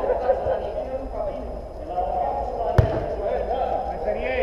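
Players' voices calling across the pitch, with a single sharp thud of the football being struck about three quarters of the way through.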